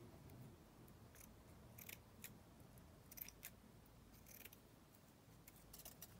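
Scissors snipping through a strip of rhinestone bling trim: a series of faint, short snips at uneven intervals.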